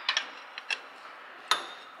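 A few light metal clicks of a spanner working on a bolt in the tractor's cast casing, with a sharper, ringing clink about one and a half seconds in.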